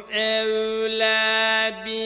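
A man reciting the Quran slowly in melodic tajweed style, holding one long steady note, with a brief break near the end.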